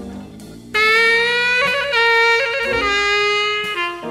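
Jazz combo playing a slow funky blues in F: soft chords at first, then about three-quarters of a second in a horn comes in loud with long held notes that change pitch a few times.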